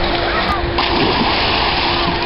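A person plunging into a swimming pool, the splash starting suddenly a little under a second in and churning on, with wind rumbling on the microphone.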